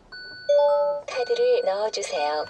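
Hyundai i30's electronic welcome chime as the push-button ignition is switched on: a short run of ding tones stepping upward, then a longer wavering melody.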